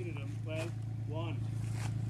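A mini excavator's engine idling with a steady low hum.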